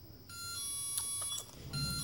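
Sencore LC77 Auto-Z capacitor-inductor analyzer beeping as its shorted test leads are zeroed: one steady beep about a second long, then a second beep starting near the end.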